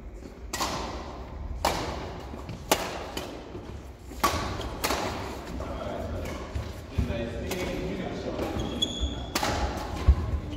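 Badminton racket strings striking a shuttlecock in a doubles rally, sharp hits coming at uneven intervals about a second apart, echoing in a large sports hall.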